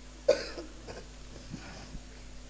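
A single short cough, loud and close to the microphone, about a quarter second in.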